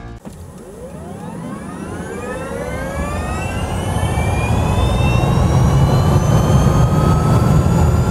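Engine spool-up sound effect: a whine that rises steadily in pitch over a low rumble and grows louder throughout.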